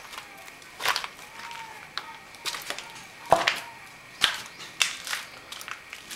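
Footsteps going down concrete stairs strewn with broken plaster and rubble: a run of irregular knocks and crunches, the loudest a little past three seconds in.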